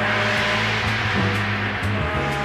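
A live jazz-rock band with drums, percussion, Hammond organ and electric bass. Low notes are held steadily under a loud crash from the drums and percussion. The crash washes out and fades away over about two seconds.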